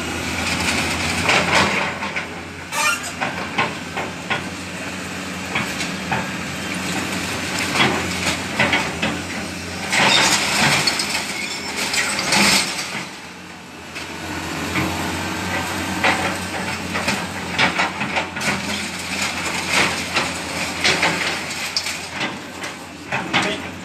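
Excavator demolishing a masonry building: its diesel engine runs steadily under irregular cracks, knocks and crashes of breaking walls and falling rubble.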